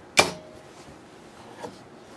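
One sharp metallic click at the industrial sewing machine a moment in, with a short ring, then faint handling of the rug as it is turned under the presser foot; the machine is not stitching.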